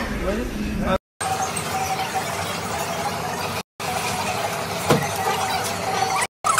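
Butane kitchen torch running with a steady hiss as it caramelizes the sugar on crème brûlée, over restaurant chatter. The sound cuts to silence twice, briefly.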